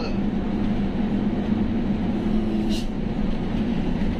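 A truck's diesel engine droning steadily under way, heard from inside the cab. A short hiss comes about three-quarters of the way through.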